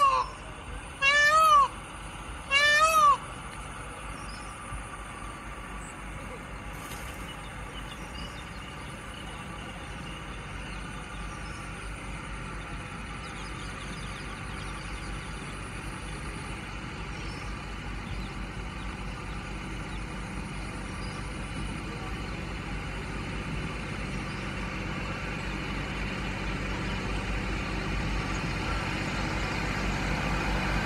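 Indian peafowl (peacock) giving its loud, cat-like call three times in quick succession, each call rising then falling in pitch, about a second and a half apart. Then a steady outdoor background hiss that slowly grows louder, with a thin high steady whine through the first part.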